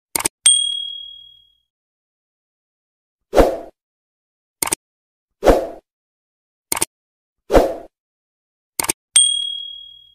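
Subscribe-button animation sound effects. A double click near the start is followed by a bright bell ding that rings out over about a second. Short soft bursts and quick double clicks then alternate about once a second, and a second ding comes near the end.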